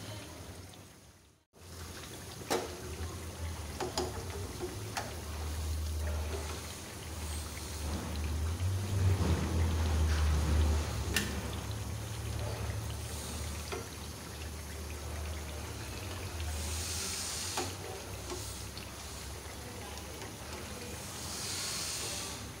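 Potato tikkis deep-frying in hot oil in a pan: a steady sizzle, with a few light clicks of a metal slotted spoon against the pan and a low hum underneath.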